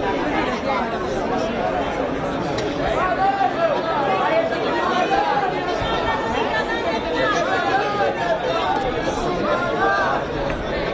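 A crowd of protesters talking over one another: a steady babble of many overlapping voices, with no single voice standing out.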